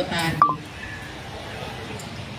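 A woman's speech ends half a second in with a very short, high beep. After that there is only low, steady room noise.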